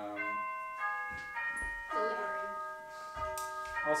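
Doorbell chime ringing a run of several bell-like notes, one after another, each ringing on under the next.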